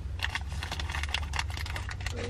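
Close-up chewing of a chewy dried-fruit snack: a run of irregular small mouth clicks, over a low steady hum inside the car.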